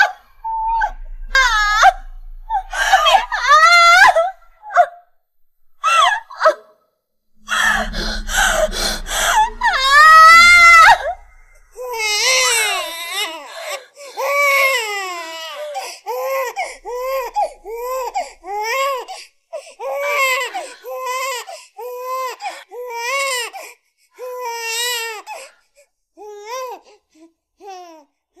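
A woman screaming in labor: several long, strained screams, the loudest about eight to eleven seconds in. From about twelve seconds on a newborn baby cries in short, regular wails, a little over one a second.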